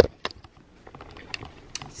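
A sharp click at the very start, then a few faint, scattered light clicks and taps.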